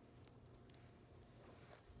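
Near silence with a few faint clicks from a small plastic toy figure being handled.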